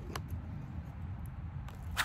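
A few faint, short clicks as trauma shears and nylon pouch gear on a plate carrier are handled, over a low steady background rumble.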